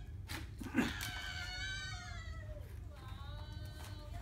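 A person's high-pitched, drawn-out excited squeal, gliding down in pitch, with a short knock just before it, likely from handling the camera box.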